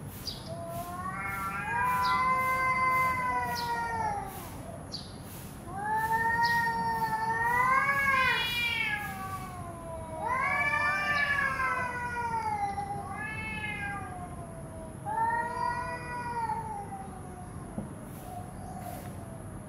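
Domestic cats in a standoff yowling: a series of long, drawn-out wavering howls, about five in a row, rising and falling in pitch, the warning caterwaul of two cats facing off.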